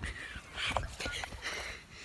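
Bare feet padding over pavement in a few soft, irregular steps, with the rustle and bumps of a phone being handled.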